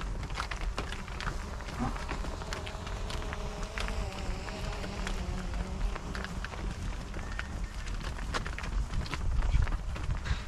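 Hooves of a herd of cows and calves clattering on a tarmac road as they walk across it, a scatter of irregular sharp clicks.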